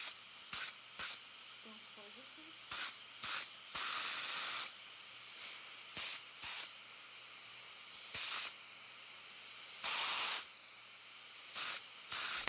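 Dental equipment hissing air in a dozen or so short, irregular bursts, each under a second, while a composite filling is polished with a rubber cup. A faint steady low hum runs underneath.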